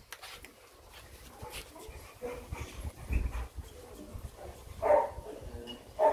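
Dog giving a few soft whimpers, the clearest about five seconds in, over low rubbing noise from handling.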